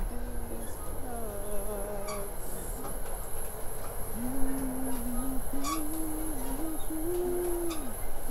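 A man humming a tune without words in long, slightly wavering held notes. There is one near the start, one after a second, then three longer ones from about halfway. Beneath them runs the low, steady rumble of a moving train carriage.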